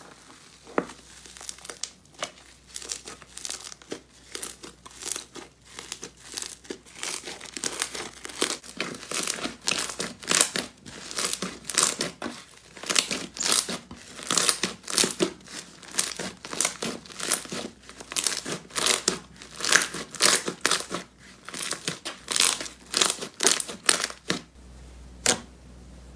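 Hands pressing and kneading fluffy, bubble-filled slime, giving dense crackling and popping in repeated squeezes a couple of times a second, louder after the first few seconds.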